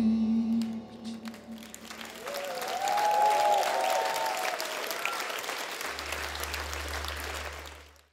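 The closing chord of the choir, band and string section fades away, and audience applause swells up about two seconds in, with a few voices calling out; the applause cuts off suddenly at the end.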